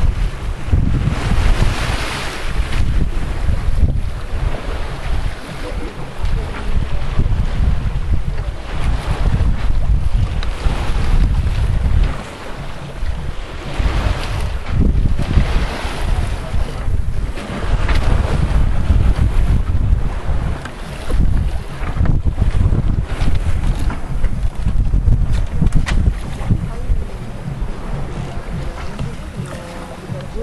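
Wind buffeting the microphone in uneven gusts on a sailing yacht under sail, over the rush of sea water along the hull.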